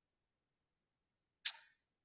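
Near silence, broken once about one and a half seconds in by a brief sound that starts suddenly and fades quickly.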